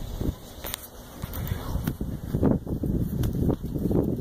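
Wind buffeting a phone's microphone, an uneven low rumble that grows stronger about a second in, with a few knocks from the phone being handled as it is turned.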